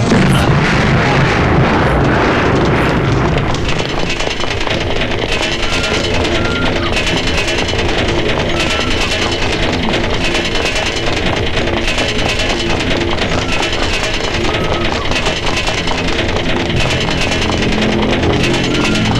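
Tense action film score with a fast, driving beat and short repeated synth notes, opening with a loud rushing swell in the first couple of seconds.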